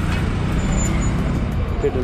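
Bajaj Pulsar NS200 single-cylinder motorcycle running as it rides at low speed through town traffic, heard with a steady low rumble of wind on the rider's microphone. A man's voice starts just before the end.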